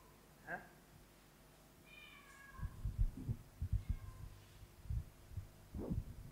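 Handheld microphone being handled and passed along, a run of low, irregular bumps from about two and a half seconds in. Earlier come two faint high calls, one rising and one falling.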